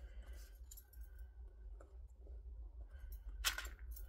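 Soft handling of the fabric bag and its plastic Wonder Clips: faint rustles and small clicks over a low steady hum, with one brief louder rustle about three and a half seconds in.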